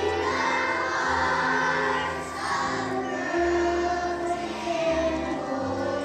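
Children's choir singing with instrumental accompaniment; the low accompaniment notes change about every second.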